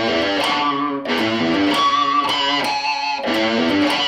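Electric guitar played through distortion, a hard-rock boogie lick in A: a run of sustained notes with short breaks about a second in and near the end. The phrase ends with an attempt at a harmonic.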